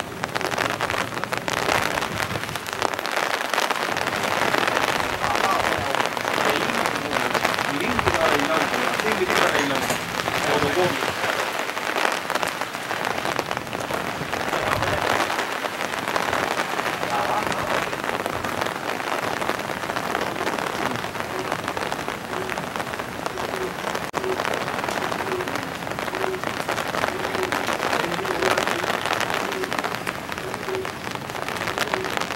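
Steady rain falling on a fabric umbrella overhead, a dense, even spatter of drops.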